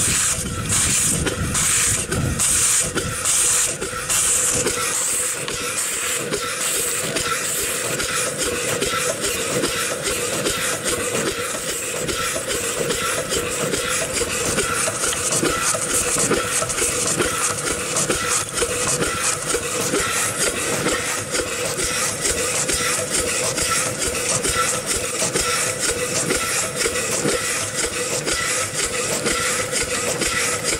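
An old upright steam engine running slowly on low boiler pressure. Its exhaust beats about twice a second at first, then blends into a steady hiss. Steam hisses from a leak around the piston rod, and the rods and valve gear tick.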